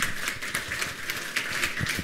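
Audience applauding: many hands clapping in a dense, steady patter.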